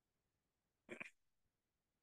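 Near silence: room tone, broken by one short, faint sound about a second in.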